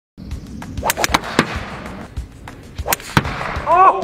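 Sharp cracks of golf clubs striking balls and golf balls smacking into an SUV: a quick run of four about a second in, then two more near three seconds.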